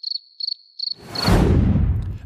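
A comedy 'crickets' sound effect: a string of short, high cricket chirps, about three a second, the stock gag for an awkward silence after a joke falls flat. About halfway through, a loud rushing whoosh with a deep rumble swells in as a transition effect.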